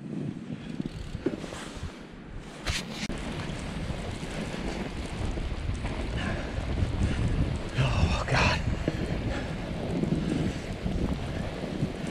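Wind buffeting the microphone during a fat-bike ride over snow, a steady rushing noise heavy in the lows that grows a little louder after the first few seconds. A few brief clicks stand out, one near three seconds and a cluster around eight seconds.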